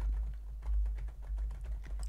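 Typing on a computer keyboard: a quick run of key clicks, over a steady low hum.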